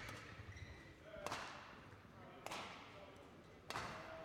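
Badminton rally: three sharp racket strikes on the shuttlecock, about a second and a quarter apart.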